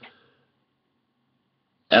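A man's speech trails off, then about a second and a half of near silence, then he starts speaking again near the end.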